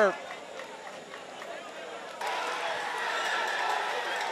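Football stadium ambience: a low, steady murmur of crowd and field noise that jumps suddenly to a louder, fuller crowd hum about two seconds in.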